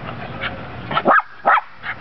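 Small dog giving two short, sharp yapping barks about half a second apart, a little past a second in.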